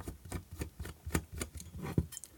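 Screwdriver working at the plastic back cap of an LED lamp to get it off: a run of small irregular clicks and ticks, about four or five a second, the sharpest near the end.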